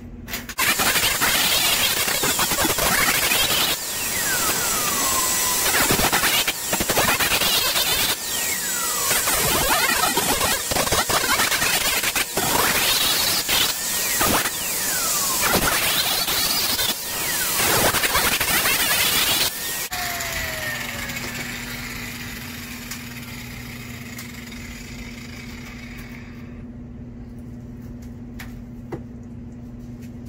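Handheld electric angle grinder with a sanding disc grinding a wooden handle clamped in a vise, its pitch rising and falling as the disc is pressed on and eased off. About twenty seconds in it is switched off and winds down with a falling whine, leaving a low hum.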